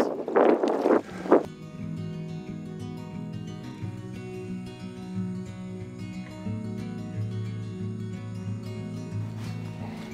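Background music with steady, layered sustained tones, coming in about a second and a half in after a few brief loud bursts of noise.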